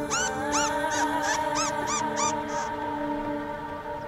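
A small animal chirps in a quick run of about eight short, high squeaks that stop a little past halfway. Soft sustained background music plays underneath.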